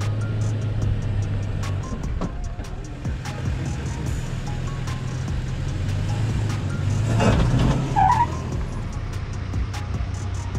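Pickup truck engine running under load as the truck crawls up a steep rock ledge, with background music with a steady beat. About seven seconds in there is a louder burst with a short high tone.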